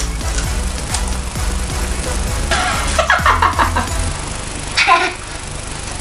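Background music with a steady low beat that stops about four seconds in, with brief voices over it.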